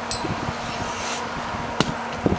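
A whole green coconut thrown down onto the ground lands with a single sharp thud near the end, without cracking open.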